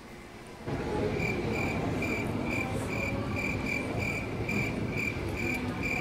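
Chirping crickets, a high chirp repeating about two to three times a second over a steady hiss, starting under a second in. Most likely the "crickets" sound effect edited in over an awkward pause.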